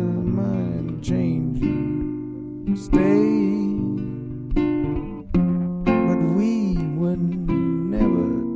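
Solo acoustic guitar playing a slow instrumental passage, chords struck every second or two and left to ring out.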